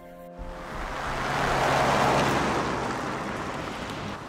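Music cuts off abruptly just after the start, followed by a swell of rushing, wind-like noise that builds to a peak about two seconds in and fades away.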